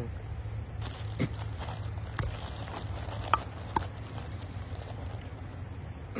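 A plastic tobacco pouch crinkles as it is handled, with a few sharp clicks and taps, over a low steady hum.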